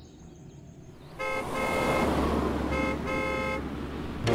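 A car horn sounds in two long honks over the rush and low rumble of a car driving fast, starting about a second in.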